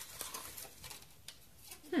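Faint rustling and a few light clicks of toy packaging being handled.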